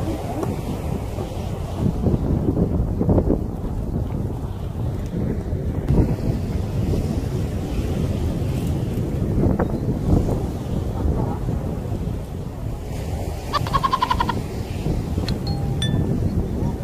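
Wind buffeting the microphone, a steady, gusty low rumble. A brief high-pitched jingle sounds about two seconds before the end.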